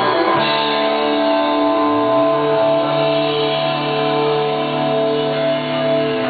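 Live rock band music: guitars hold one long sustained chord, with a lower note joining about two seconds in.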